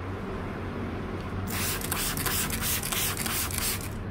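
A handheld spray bottle spraying water onto a plastic body panel: a hissing burst of about two seconds that starts partway in and stops just before the end.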